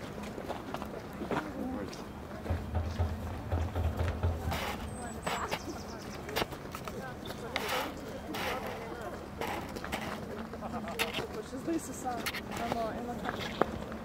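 Faint talking voices with many scattered sharp clicks and knocks, and a low hum lasting about two seconds a few seconds in.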